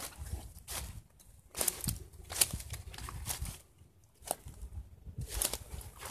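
Footsteps through dry leaf litter, crunching and rustling at an uneven pace, with two brief pauses in the walking.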